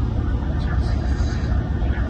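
Steady low rumble of a ship's running machinery, heard inside the vessel's mess room.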